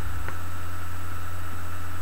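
Steady low hum with an even hiss, the recording's constant background noise, and a faint click about a third of a second in.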